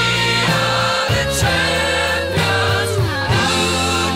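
Background music: a song with singing over sustained bass and a steady beat.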